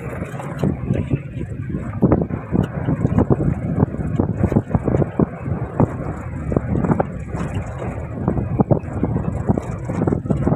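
Safari jeep driving over a rough gravel forest track: a steady low rumble of engine and tyres, with frequent short knocks and rattles from the bumps.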